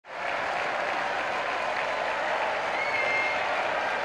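A crowd applauding steadily, fading in at the start, with a short whistled note from the crowd about three seconds in.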